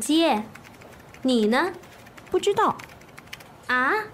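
A woman speaking Mandarin in short syllables with pauses between them, each word's pitch gliding up or down. Faint clicks can be heard in the pauses.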